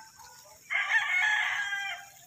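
A rooster crowing: one call lasting a little over a second, starting partway in.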